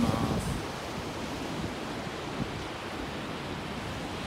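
Ocean surf breaking on a beach, a steady wash of waves, with wind on the microphone.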